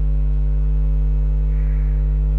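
Steady mains hum: a low electrical buzz with a stack of even overtones above it, unchanging throughout.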